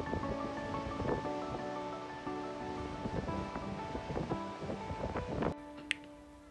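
Background music with steady held notes over the rushing roar of the Gullfoss waterfall. The rushing cuts off suddenly near the end while the music carries on.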